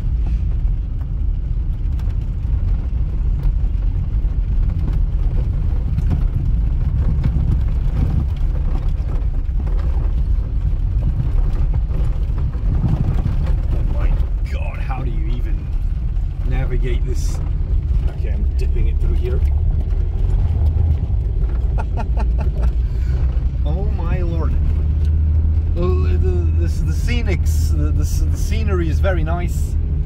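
Lada Samara 1500's four-cylinder petrol engine pulling steadily at low speed over a rough dirt track, heard from inside the cabin as a constant low rumble. Scattered knocks and rattles come from the car jolting over the broken surface.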